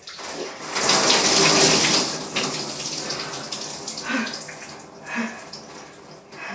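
Water splashing down onto a shower floor, starting suddenly, heaviest for the first two seconds, then thinning to a lighter wash with scattered splashes and drips.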